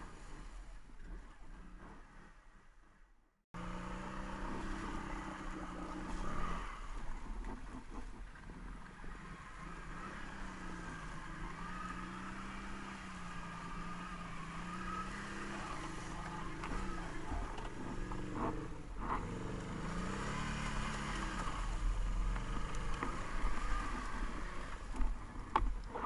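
Can-Am Renegade ATV engine running and revving unevenly under the rider's throttle, starting a few seconds in after a faint opening. Near the end the engine pitch rises and falls as it is revved.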